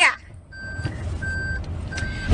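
An electronic beep repeating steadily, about once every two-thirds of a second, three beeps in all, over a low background rumble.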